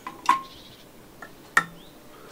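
A plastic syringe being emptied into a plastic sprayer bottle: a short squirt with a brief squeak, then a sharp plastic click about one and a half seconds in.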